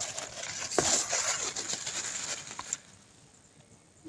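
Mulberry leaves rustling and brushing against the phone's microphone: a crackly rustle that stops a little before the end.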